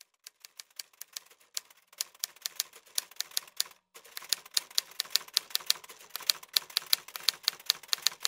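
Typewriter keys striking in a rapid, uneven stream of sharp clacks. They start faint, stop for a brief moment just before the middle, then come back louder and denser.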